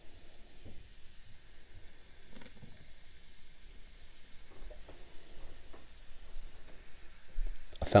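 Carbonated soda poured from a can over ice into a clear cup, fizzing faintly as the foam rises, with a few small ticks.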